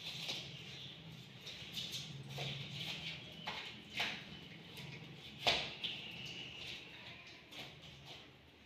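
Light taps and scrapes of cardboard cut-out pieces being set down and slid on a cardboard sheet over a table, a handful of separate taps with the sharpest about five and a half seconds in, over a low steady hum.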